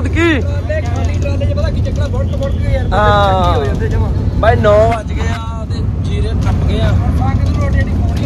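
Steady low drone of a moving vehicle's engine, heard from aboard, with people talking over it.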